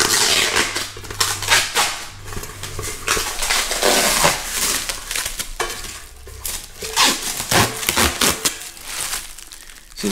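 Protective plastic film being peeled off a thin corrugated metal garden-bed panel: irregular crinkling and crackling of the film, with rattles of the flexing sheet metal, easing off a little near the end.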